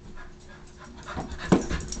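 A dog panting and moving about, getting louder toward the end, with a sharp knock about one and a half seconds in.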